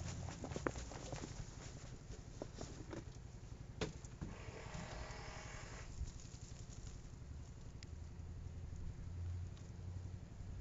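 Loose potting soil and peanut plants rustling and spilling as a black plastic pot is tipped out and the plants are pulled free, with several light clicks in the first second and a sharp knock about four seconds in. A soft pouring hiss follows for a couple of seconds, over a low steady hum.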